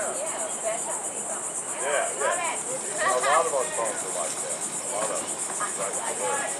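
Outdoor insect chorus: a steady, rapidly pulsing high-pitched buzz that runs without a break, with indistinct voices in the background.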